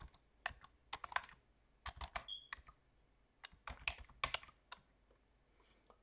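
Computer keyboard being typed on, faint clicking keystrokes in three short runs with pauses between, as a name is entered into a text box; the typing stops about a second before the end.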